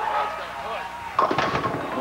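A bowling ball rolling down a wooden lane, then crashing into the pins a little over a second in: a sudden loud clatter of pins that rattles on briefly. The ball comes in way right, light of the pocket, and leaves four pins standing in a split.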